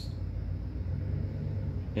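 A steady low hum with nothing else happening over it.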